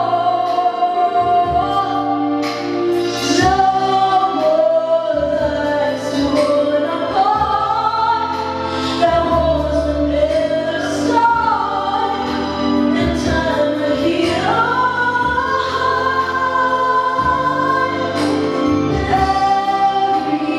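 A woman singing a Christmas song over backing music, holding long notes that slide up and down between pitches.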